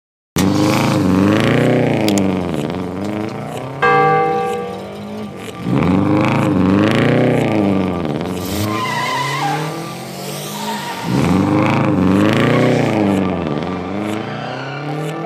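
Racing-car engine sound effect in an intro jingle: an engine revving up and down in three loud spells, with a short steady beep about four seconds in, over music.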